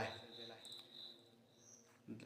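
A pause in a man's talk, with the last of a word at the very start. A faint, high, steady tone is held for about a second and then fades.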